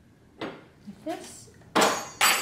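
Faint handling sounds of parts under a car's hood, then near the end a sudden loud metallic clink that rings on.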